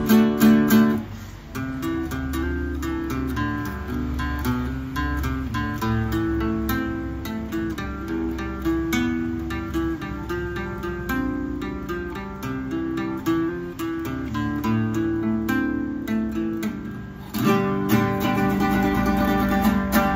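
Freshly tuned nylon-string classical guitar played in chords, with picked notes and arpeggios for most of the time. After a short pause near the end it breaks into louder strummed chords.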